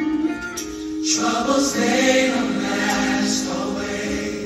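Recorded gospel choir song played over loudspeakers for a mime, the choir holding long sung notes.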